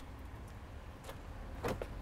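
VAZ 2107 engine running at a steady low idle, with a brief louder sound near the end.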